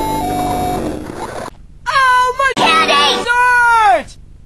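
A cartoon character's laugh, then edited, drawn-out voice sounds over background music. The voice wavers up and down in pitch and ends in a long falling glide that cuts off abruptly.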